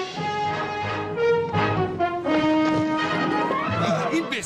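Orchestral film score with brass, playing a run of held notes.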